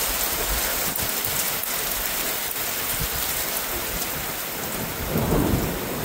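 Heavy rain pouring steadily, with a few sharp drop hits. A low rumble of thunder swells about five seconds in.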